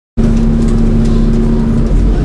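Double-decker bus engine running, heard from inside the top deck: a steady low rumble with a constant hum, cutting in abruptly just as the sound starts.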